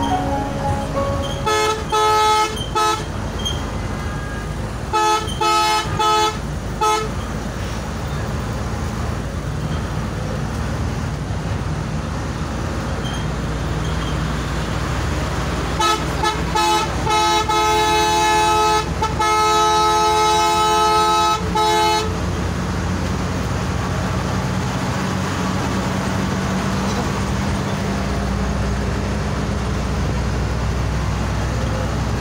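Multi-tone bus horn sounding in clusters of short toots, about two seconds in and again around five to seven seconds, then a longer run of toots and held blasts from about sixteen to twenty-two seconds. Beneath it, the coach's engine and road noise drone steadily, heard from inside the cab.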